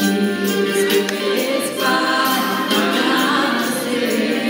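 Music: a choir singing.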